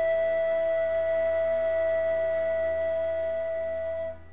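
Pan flute music: one long held note over a soft, gently pulsing accompaniment and a low drone.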